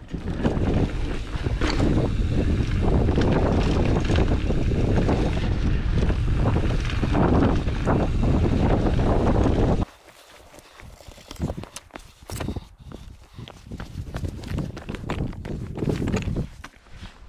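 Wind buffeting the microphone and tyres rolling over a dirt trail as a Transition Sentinel 29er mountain bike descends. About ten seconds in, the sound cuts off abruptly to a much quieter stretch with scattered light crunches and clicks.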